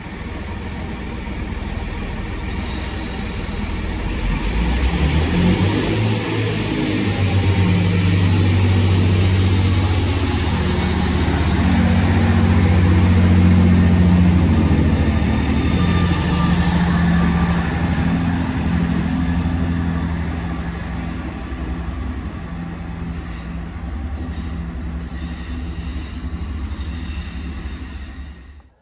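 Great Western Railway Class 165 diesel multiple unit pulling out of the station past the microphone. Its diesel engines give a steady low drone that grows louder, peaks about halfway through, then fades as the train draws away.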